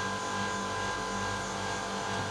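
Steady hum of running engine-room machinery: an even low drone with a faint steady whine above it, unchanging throughout.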